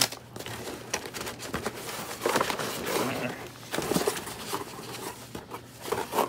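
Paper and cardboard rustling and crinkling as old paper envelopes and booklets are handled and shuffled in a cardboard box, with irregular small clicks and scrapes.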